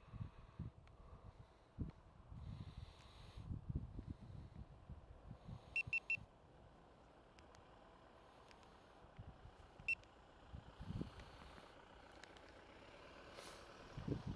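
Three short, quick electronic beeps about six seconds in and a single beep near ten seconds, over a faint, irregular low rumble.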